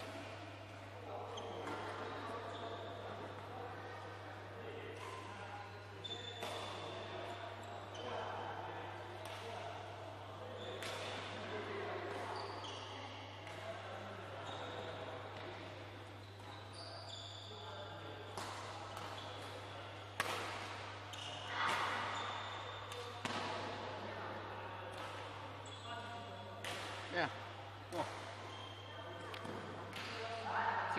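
Badminton being played in a large hall: sharp racket strikes on the shuttlecock, short high squeaks of shoes on the court floor and distant voices, all echoing, over a steady low hum. The loudest hits come in the second half.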